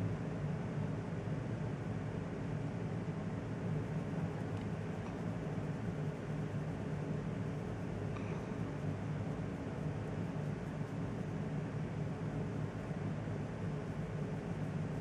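Steady low hum with a faint hiss: continuous background room noise.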